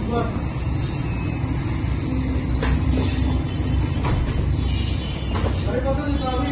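About five sharp slaps and thuds spread over a few seconds, from punches and kicks landing in a Kyokushin karate bout, over a constant low rumble.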